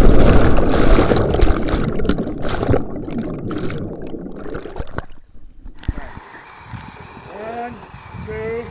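Underwater rushing and bubbling of lake water around a camera that has just plunged in from a high jump, loud at first and fading over about five seconds. After a cut about six seconds in, quieter open air with a person's voice calling out briefly near the end.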